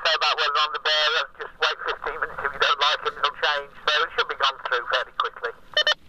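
A man's voice coming through a handheld walkie-talkie's small speaker, thin and tinny with no bass, saying the weather should lighten and be gone through fairly quickly.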